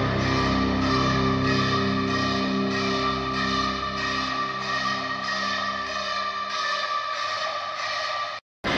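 Background music: held tones over a steady, even beat.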